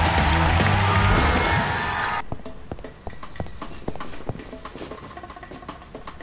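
Loud background music with a heavy bass that cuts off abruptly about two seconds in. It gives way to a quieter passage of light, irregular clicks and taps.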